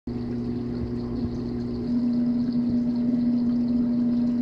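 Aquarium pump motor humming steadily, a constant low electrical drone with a little low rumble in the first couple of seconds.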